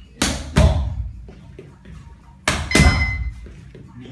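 Boxing gloves hitting focus mitts: two one-two combinations, each a jab and then a right straight landing as a quick pair of thuds, the two combinations about two seconds apart.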